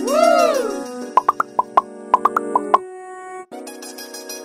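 Upbeat children's background music with cartoon sound effects: a pitched swoop that rises and falls, then a quick run of short, bright pops. After a brief break near the end, the keyboard music carries on.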